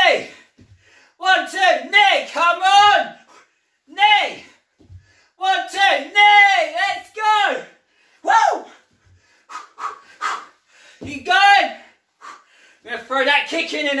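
A man's voice in short, strained calls of a few syllables each, separated by gaps with breathing and a few light knocks.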